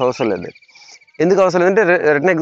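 A cricket's rapid, high-pitched trill on one steady pitch, under a man's speech, stopping about a second in.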